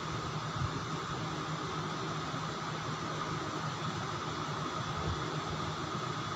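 Steady background hiss with a faint even hum and no distinct events: constant room noise under quiet hand-sewing.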